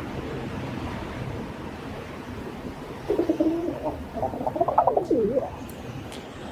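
A dove cooing: a wavering run of coos starting about three seconds in and lasting a couple of seconds, over steady background noise.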